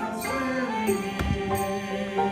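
Small mixed church choir singing a carol in unison and harmony, accompanied by an upright piano, with sustained notes that hold and change pitch.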